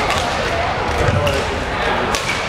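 Badminton rally: racket strikes on the shuttlecock and players' footfalls on the court, with a thud about a second in, over steady crowd chatter in a large hall.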